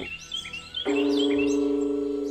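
Background music: a steady, held, bell-like note comes in about a second in, under a run of short, high bird chirps.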